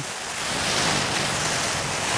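Steady rushing noise of wind and rain on a Cuben fibre tarp, swelling a little in the first second.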